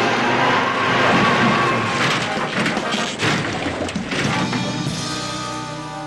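Background music over the noise of a car crashing off the road through brush, with several hard knocks between about two and four seconds in; the music carries on alone, fading down near the end.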